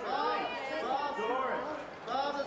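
Several people talking at once, indistinct chatter with no words that can be made out.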